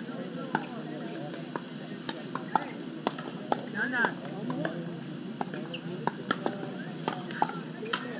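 Pickleball paddles striking the hard plastic ball: sharp pops at irregular intervals, several a second at times, over a murmur of voices.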